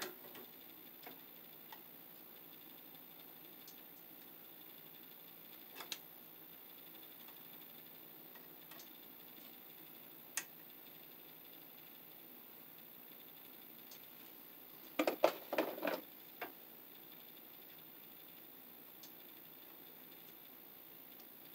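Needle-nose pliers and a screw working a wire loop on an old fuse box's screw terminal: faint scattered metal clicks over quiet room tone, with a short flurry of louder clicks and knocks about fifteen seconds in.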